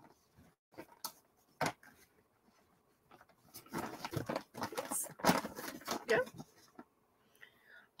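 A reusable grocery-style fabric tote bag being handled: a couple of short crinkles, then a few seconds of on-and-off rustling as hands move over and shift it.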